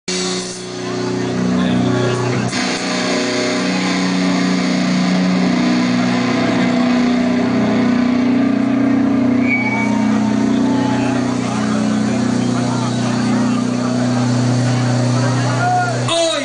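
Live band on stage playing a droning intro of held, amplified low notes that shift to new pitches every few seconds, with no drums.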